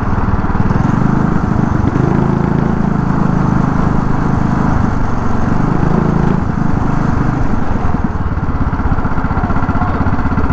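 A go-kart's small engine running steadily with a rapid, even putter, heard up close from the driver's seat as the kart moves along the track.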